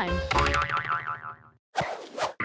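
Children's TV background music with a wobbling cartoon 'boing' sound effect that fades away, followed by a short noisy burst near the end.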